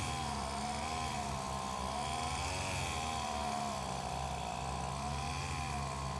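Petrol strimmer engine running at a steady working speed, its pitch wavering gently up and down.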